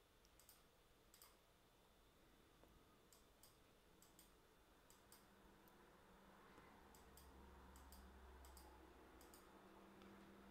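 Near silence with faint computer mouse clicks, about one a second and often in pairs, as brush strokes are made. A faint low hum rises a little in the second half.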